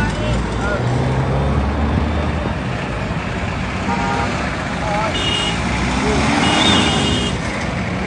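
Roadside traffic noise: a nearby vehicle engine drones for the first couple of seconds over a steady rush of passing traffic, with indistinct voices of people standing around.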